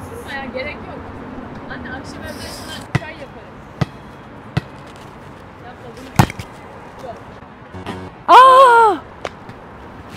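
Volleyball smacks on an outdoor court: three light knocks under a second apart, then one sharp, loud smack about six seconds in. A couple of seconds later comes a loud, short shout.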